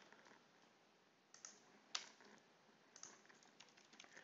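Faint computer keyboard keystrokes: a few scattered taps with near silence between them.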